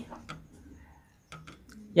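A near-quiet pause holding a few faint, light clicks, typical of handling small tools or parts.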